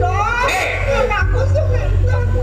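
Voices of stage performers heard through a loudspeaker system, over a steady low electrical hum.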